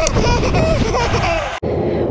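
A busy mix of music or voices that cuts off abruptly about one and a half seconds in. It gives way to steady low road rumble inside a moving car's cabin.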